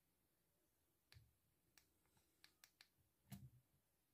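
Near silence, with half a dozen faint, short clicks scattered through it, the slightly louder last one about three and a half seconds in.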